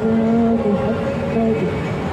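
A woman's voice chanting dhikr through a microphone and loudspeaker, holding long steady notes; the note drops in pitch about one and a half seconds in.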